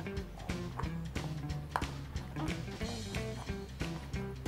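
Background music with a regular beat and held notes.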